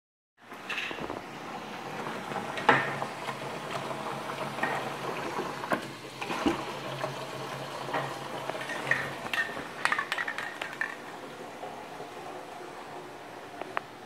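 Tap water running from a kitchen faucet into a plastic bucket, with a low steady hum and scattered knocks and clinks. The running water stops about eleven seconds in.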